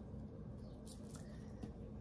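Quiet room with faint, brief rustling around a second in as a wooden cross-stitch display is handled.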